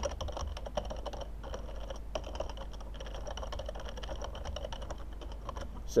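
Typing on a computer keyboard: a quick, irregular run of keystroke clicks with a brief pause about a second and a half in.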